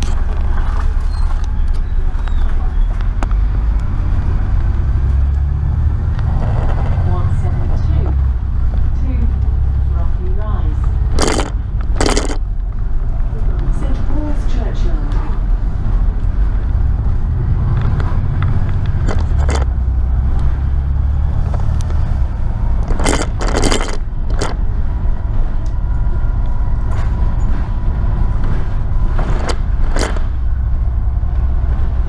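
A double-decker bus's diesel engine running, heard from inside on the upper deck: a steady low rumble that swells and eases as the bus pulls along and slows. Sharp clacks of rattling bodywork or fittings come in two quick pairs, one near the middle and one later.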